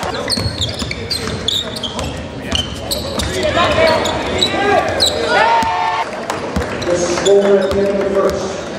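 Basketball shoes squeaking again and again on a hardwood gym floor during play, with short sharp squeals throughout, over the voices of players and spectators in the hall.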